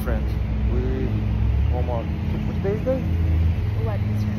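Road traffic on a city street: a steady low engine drone from nearby vehicles, with short snatches of people talking over it.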